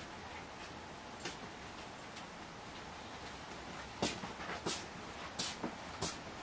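Radiation Alert Inspector Geiger counter clicking at irregular intervals as it counts radiation from matcha green tea powder, each click one detected count, with the loudest clicks coming close together in the last two seconds.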